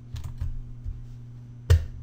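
Light clicks and taps at a computer as the slideshow is closed, a few soft ones early and one sharper click near the end, over a steady low electrical hum.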